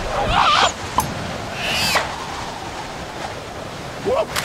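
Cartoon sound effects: a short wavering, warbling cry, a sharp click about a second in, then a brief whoosh, followed by quieter ambience.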